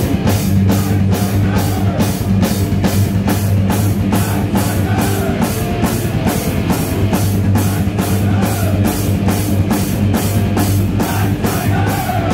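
Heavy metal band playing live and loud: drum kit pounding out a steady, driving beat of about three hits a second under distorted electric guitars and bass.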